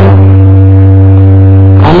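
A loud, steady drone of several held tones with a deep low note loudest, unchanging in pitch, with no speech over it.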